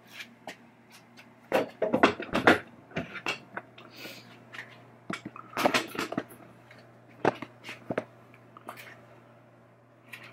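Handling noise as a camera is picked up and moved: bursts of knocks, clicks and rattles, loudest about two seconds in and again around six seconds, with a few single knocks later, over a faint steady low hum.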